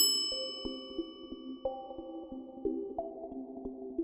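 A single bright chime sound effect struck once at the start, its ringing fading out over about two seconds, over soft background music.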